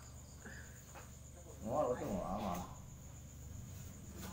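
Faint, steady high-pitched chirring of insects in the background. A short wordless murmur from a man's voice comes about halfway through.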